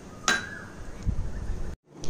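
A single clink of kitchenware with a short ringing tone, followed about a second later by a few soft low knocks. The sound drops out briefly near the end.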